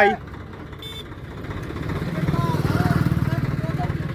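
Swaraj 855 tractor's diesel engine working up under load as it pulls on a chain hitched to a stuck, loaded trolley. Its even firing beat grows louder from about halfway through.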